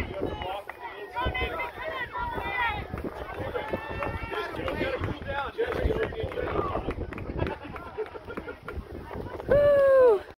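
Spectators shouting and cheering, many voices overlapping, with one loud shout close by near the end that falls in pitch.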